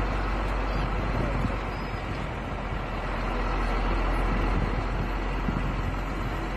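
Steady road and engine noise of a moving vehicle, heard from inside it: a continuous deep rumble under an even rushing noise, with no distinct events.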